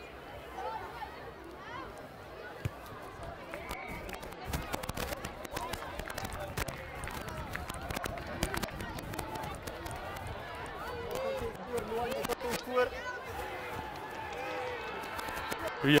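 Sideline voices of players and spectators calling and chattering at a distance, with scattered clicks and knocks. A louder, close "yeah?" comes right at the end.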